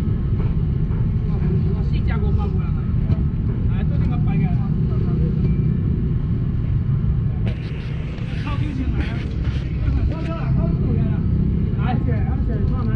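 Busy outdoor market din: scattered voices over a steady low rumble, with a brief rustling burst about eight seconds in.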